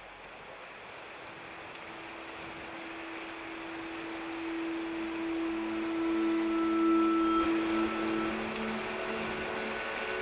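Water falling and rushing over rocks, fading in from faint and growing louder over the first seven seconds or so, then steady. A few soft, long-held music notes sound underneath.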